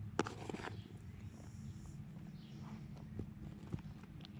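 Hand digging through damp leaf-based worm bedding: the crumbly compost rustles and crackles, with a sharp crunch just after the start and a few softer ones later, over a steady low background rumble.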